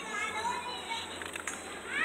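Children's voices calling out, high-pitched, with a louder call at the very end.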